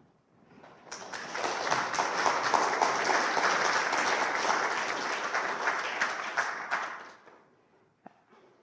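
Audience applauding at the end of a talk: a steady crowd of clapping that swells in about a second in, holds, and fades out about seven seconds in.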